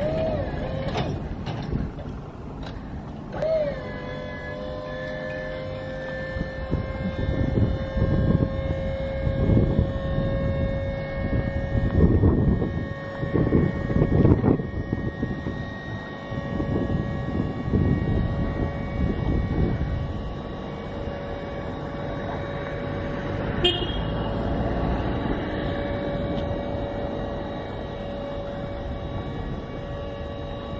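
Skyjack SJIII-3226 electric scissor lift raising its platform: the electric hydraulic pump motor runs with a steady whine that sets in, wavering briefly, a few seconds in. Uneven low rumbling swells and fades through the middle.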